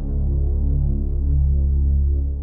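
Background music: a low, sustained droning chord that shifts pitch slightly a couple of times.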